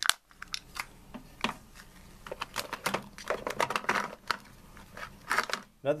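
Small plastic tool case being handled and closed over a toolbox of metal tools: irregular clicks and light rattles, busiest in the second half.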